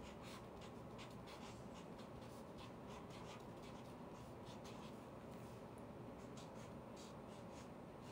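Pen writing on paper: faint, short scratchy strokes, several a second, as a colour is put down stroke by stroke.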